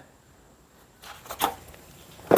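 Quiet room tone, then a brief faint rustling noise about a second and a half in.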